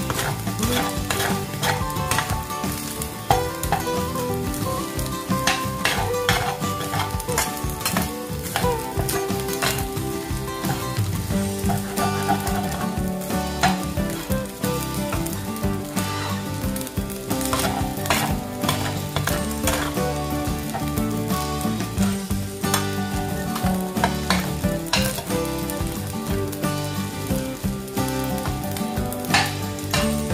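Fried rice sizzling in a stainless steel frying pan as it is stirred and tossed with a spatula, the spatula scraping and knocking against the pan many times.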